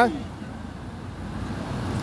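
Low road-traffic rumble from passing vehicles, growing somewhat louder toward the end.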